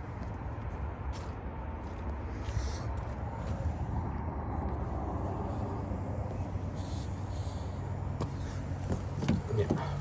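Steady low outdoor rumble with faint hiss and a few scattered clicks. About nine seconds in come a few sharper clicks as a car door handle is tried and the door is found locked.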